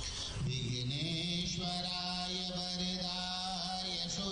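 A man chanting Hindu puja mantras. His voice glides at first, then holds one long steady note from about a second and a half in.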